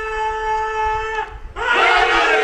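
A man's drawn-out naara (slogan) cry, held on one long steady high note that breaks off a little after a second in. A crowd of men answers with a loud shout about a second and a half in.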